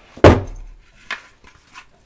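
A sharp thunk from a cardboard tarot-card box being handled on a table, followed by two lighter taps about a second and nearly two seconds in.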